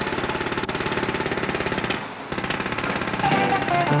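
Cartoon sound effect of an engine running with a fast, even rattle over a low hum. It breaks off briefly about two seconds in, then resumes, and music comes in near the end.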